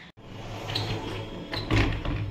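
A door opened by its metal lever handle, the latch clacking loudly near the end, over a steady low hum.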